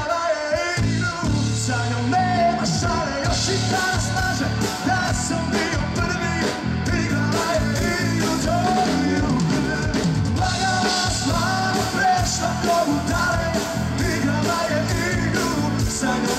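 A man singing lead vocals into a microphone over a live band with drums and keyboards, amplified through a PA, with a steady beat throughout.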